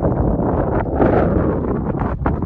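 Wind buffeting the microphone: a loud, rough rumble that swells with a gust about a second in.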